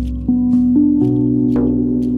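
RAV steel tongue drum (B Celtic double ding) played slowly: four notes struck in under two seconds, each ringing on, over a deep low drum tone that slowly fades.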